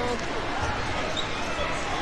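Indistinct chatter of many people in a large, echoing gym, with scattered dull thuds underneath.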